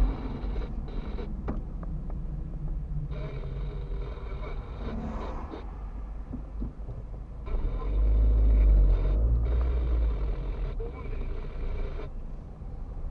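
Car cabin noise while driving slowly in town: engine and tyre rumble heard from inside the car, swelling into a louder low rumble from about eight to ten seconds in.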